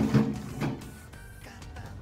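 Background music, loudest in the first half-second, then quieter.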